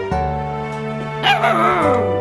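A Samoyed puppy gives one short cry that falls in pitch, about a second in, over steady background music.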